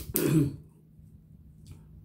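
A woman clears her throat once, a short rough burst with a little voice in it, right at the start. Near the end there is a faint click as she pulls a cooked snow crab leg shell apart by hand.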